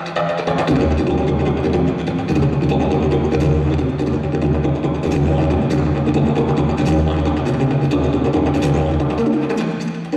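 Wooden didgeridoo played live: a continuous low drone with shifting overtones, pulsed by a steady rhythm of sharp accents.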